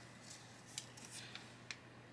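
Faint, brief rustling and light clicks of a paper placement template being slid off a hooped towel.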